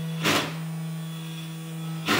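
SainSmart 3018 PROver V2 desktop CNC spindle running with a steady hum as a quarter-inch end mill cuts an aluminium bar, with a brief loud burst of cutting noise about a quarter second in. The cut is chattering and bouncing, which the owner thinks is partly because the bit sticks out too far.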